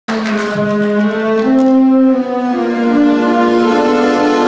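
Concert wind band of brass and woodwinds playing the opening of an instrumental introduction: sustained notes in several parts moving about once a second, before the tenor's vocal enters.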